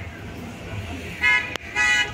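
A vehicle horn honking two short blasts in the second half, steady and high-pitched, with a sharp click between them, over a murmur of background voices.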